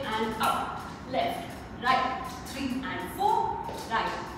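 Speech only: a woman's voice in short phrases, breaking off every half-second to second.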